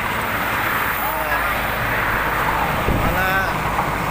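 Steady road noise, with wind on the microphone and passing vehicles and bicycles, as a pack of cyclists goes by. Faint voices are heard about a second in and again near three seconds in.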